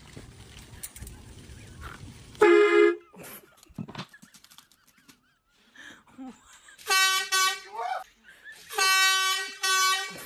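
Air horn blasts: one short, very loud blast, then after a gap two longer blasts about two seconds apart. Each is a pitched horn tone with a stack of overtones.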